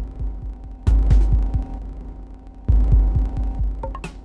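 Live-coded electronic music: a deep bass drone swells in twice, about two seconds apart, each swell followed by a few short low thumps, over a steady hum.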